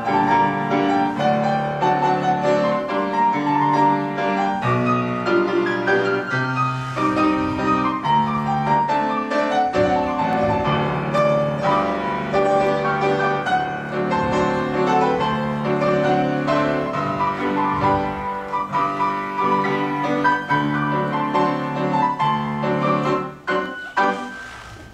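Solo piano playing classical-style accompaniment for a ballet exercise, in a steady metre. The music stops shortly before the end.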